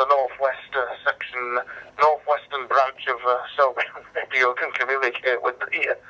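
A man's voice received over DMR digital radio, heard through a Motorola DM4600 mobile radio's speaker, talking steadily with short pauses. It sounds thin, with little above the upper middle range.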